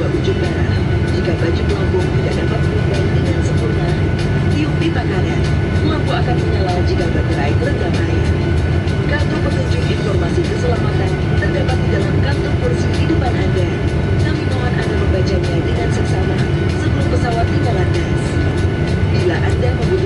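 Steady low rumble of a Boeing 737-800 passenger cabin, with a faint, steady high whine on top.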